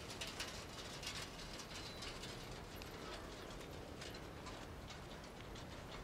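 Bullock cart on a dirt road: irregular clicking and rattling from the cart and the animals' hooves, several times a second.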